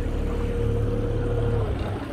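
Outboard motor of a small john boat running at a steady pitch, then easing off and dropping in pitch near the end.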